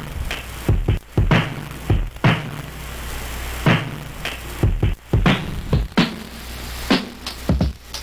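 Drum samples played back from an Arduino-driven ISD1760 sample-player chip, set to play on each trigger, so drum hits come at uneven intervals. Under them runs a steady low hum of noise from the synth and mixer.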